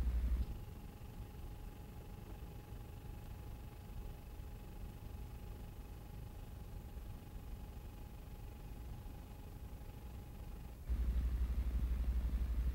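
Faint hiss of an old film soundtrack with a thin, steady high whine running through it. A loud low hum drops out about half a second in and comes back near the end.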